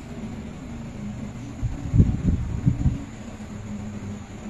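Steady low hum of room noise with a faint hiss, broken by a few soft, low thumps around the middle.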